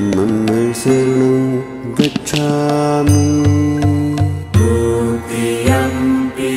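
Devotional chant music: a voice chanting in long held notes with short slides in pitch over a steady low drone. A pulsing bass joins about halfway through.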